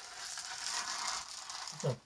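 Tape being peeled off the edge of a sheet of textured watercolour paper: a continuous crackling rasp for about a second and a half, stopping just before the end.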